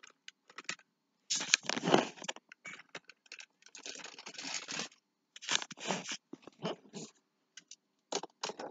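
Battery-powered Tomy/Trackmaster toy train running on plastic track, clattering in irregular bursts with short silent gaps between them.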